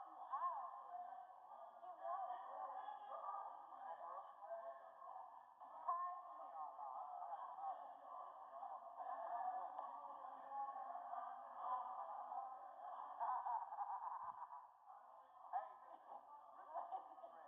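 Several people's voices talking over one another, muffled and thin as if heard through a narrow filter, with no words coming through clearly.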